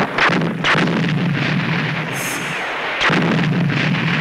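Battle soundtrack of rapid gunfire and artillery blasts in a dense, continuous barrage, with a heavy new blast about three seconds in.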